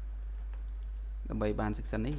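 Computer keyboard and mouse clicks over a steady low electrical hum as AutoCAD commands are entered; a man's voice starts about a second and a half in.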